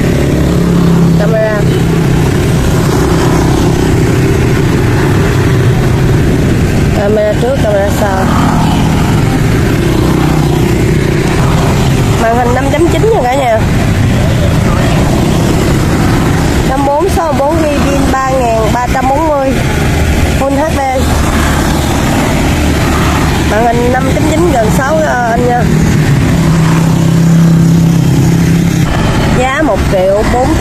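Steady low rumble of motor-vehicle engines and street traffic, with voices talking on and off over it.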